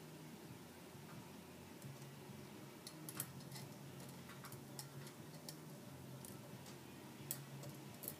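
Faint, irregular small clicks and taps of metal forks and a quarter being fitted together and balanced on the rim of a drinking glass, about a dozen ticks with a sharper one near the end.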